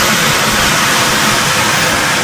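Helicopter lifting off: a steady rush of turbine and rotor noise with a thin, very high turbine whine that creeps slightly up in pitch.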